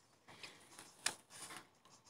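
Faint clicks and light scrapes of chocolate cereal pieces being picked from a bowl and dipped in melted chocolate by hand, with the sharpest click about a second in.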